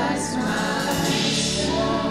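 Live worship music: a small vocal group singing held notes together over a band.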